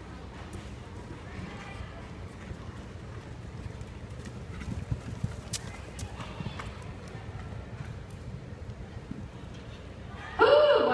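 Horse's hoofbeats on soft arena dirt as it gallops a barrel-racing pattern, with a few sharper hoof strikes about five to six seconds in as it turns a barrel close by.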